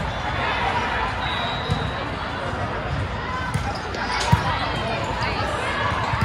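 Din of a busy indoor volleyball hall: players and spectators talking and calling across the courts, with scattered thumps of balls being hit and bouncing, and one sharp ball contact about four seconds in.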